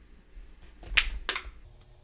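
A small metal C-clip snapping off a clutch gear's shaft as it is pried with a push pin: a sharp click about a second in, followed by a weaker one.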